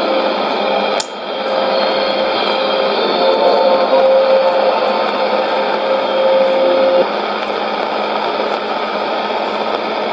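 Sony ICF-2001D shortwave receiver tuned to 12015 kHz AM, giving steady band noise and hiss with a single low steady whistle that stops about seven seconds in. A brief click with a short drop in level comes about a second in.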